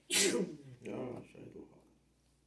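A man's voice saying a few short syllables, beginning with a sharp hiss.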